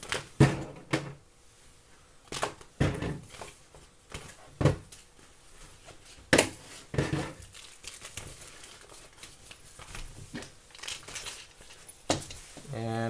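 Thin plastic makeup bag crinkling and rustling as it is handled and small makeup items are packed into it, in irregular crackles with a few louder ones spread through.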